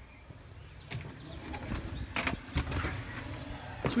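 A front storm door and entry door being opened and passed through: a run of latch clicks and knocks with handling noise, starting about a second in and growing louder, the sharpest knock just before the end.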